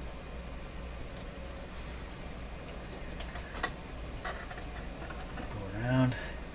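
A few faint, irregular clicks and taps from hands working dial cord around the tuning drum and pulleys of a tube radio chassis, over a low steady hum. Near the end, a short murmur from a voice, rising in pitch.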